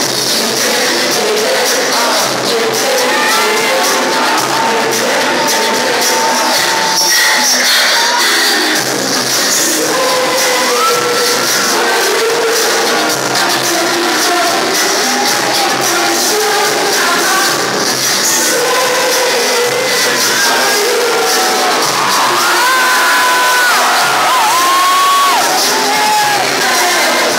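Live pop music played loud through a concert sound system, with singers on microphones and crowd noise from the audience over it.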